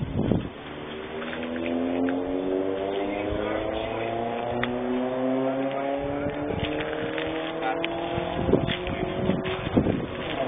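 A car engine accelerating, its pitch rising steadily, dropping back once about halfway through as it shifts up a gear, then climbing again.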